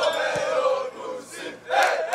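A football team in a huddle shouting together in a celebration chant: one loud group shout lasting about a second, then a second short shout near the end.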